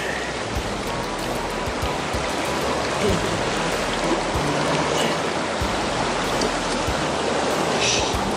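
Shallow mountain river rushing steadily over rocks and riffles.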